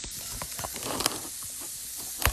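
Two plant-based burger patties sizzling in hot grapeseed oil in a frying pan: a steady frying hiss with a few faint ticks.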